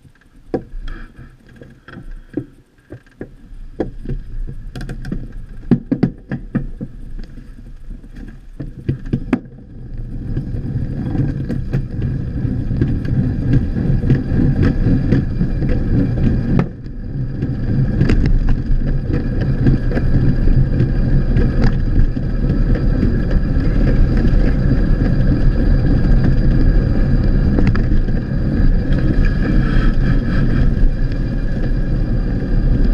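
Velomobile starting off and rolling along a street, heard from inside its shell. Scattered clicks and knocks for the first several seconds, then from about ten seconds in a steady rumble of tyres and road noise that grows louder as it picks up speed.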